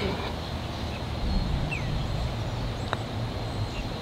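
A low, steady outdoor rumble, with a short chirp about a second and a half in. About three seconds in comes a single light click: a putter striking a golf ball on a short putt.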